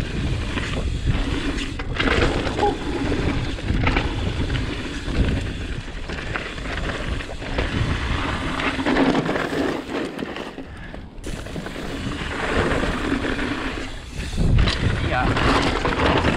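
Cannondale Jekyll mountain bike descending loose, rocky singletrack: tyres crunching over dirt and stones, with frequent knocks and rattles from the bike over rough ground and wind buffeting the microphone. There is a brief lull about ten seconds in.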